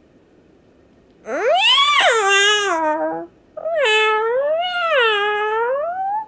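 A cat meowing twice. The first meow is long, rising and then falling. The second is longer still and wavers down and up twice before it trails off.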